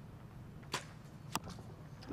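A compound bow shot: a sharp snap as the arrow is released, then about half a second later a second, sharper knock as the arrow strikes the target.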